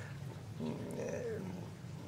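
A man's faint low hum or hesitation sound, wavering briefly in pitch, over a steady low room hum.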